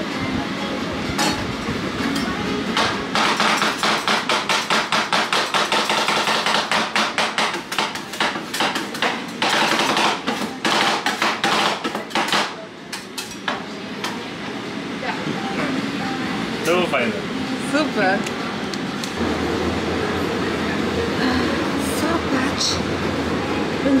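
Two metal spatulas chopping rapidly on the frozen steel plate of a rolled-ice-cream counter, about four sharp taps a second, as the liquid base freezes and is mixed. The chopping stops about halfway through.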